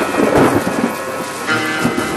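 A loud, dense rumbling and crackling noise in a home-recorded electronic track, with faint tones inside it and a new tone entering about one and a half seconds in.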